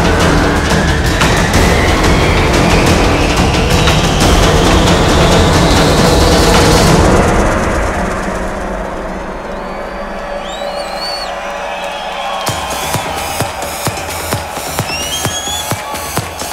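Loud electronic dance music: a dense build with a rising sweep that cuts off about seven seconds in, then a thinner passage with high gliding tones, and a steady hardstyle kick drum coming in, about two beats a second, in the last few seconds.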